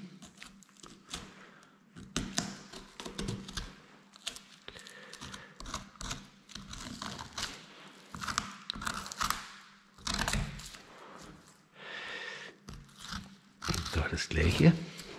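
Boning knife cutting and scraping along the bone of a yearling red deer shoulder as the meat is worked free, with irregular clicks and knocks.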